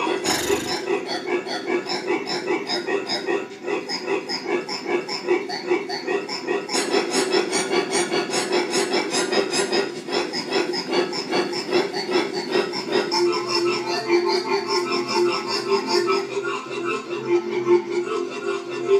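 A voice holding a long, unbroken 'aaaah' cry at one steady, fairly high pitch, with a short break about three and a half seconds in.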